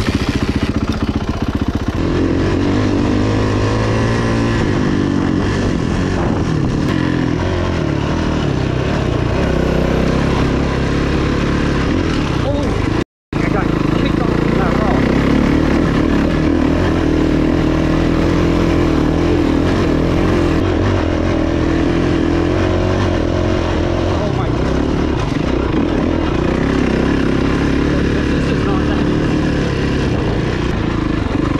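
Kawasaki KX450F dirt bike's single-cylinder four-stroke engine running under way on a dirt trail. Its pitch rises and falls with the throttle and gear changes. The sound cuts out for a moment about thirteen seconds in.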